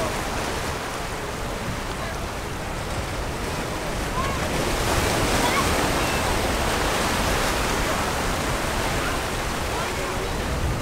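Ocean waves breaking and washing over shoreline rocks, the surf swelling louder about halfway through.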